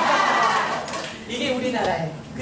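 A seated group of older people clapping in rhythm, with a woman's voice calling out at the start.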